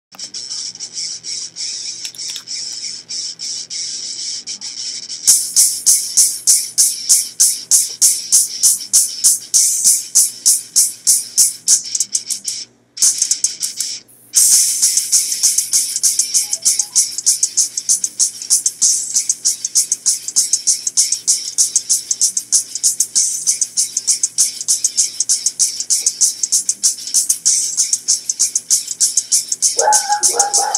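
Aerosol spray-paint can being shaken, its mixing ball rattling in a fast, steady rhythm of sharp clacks. It opens with about five seconds of steadier, quieter hiss, and the rattling drops out twice for a moment near the middle.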